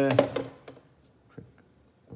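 A man's voice finishing a spoken phrase in the first half-second, then near quiet with a couple of faint taps.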